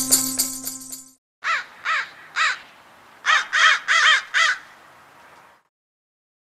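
A rattle-and-tambourine music sting fades out about a second in. Then a crow caws seven times: three caws, a short pause, then four more in quicker succession.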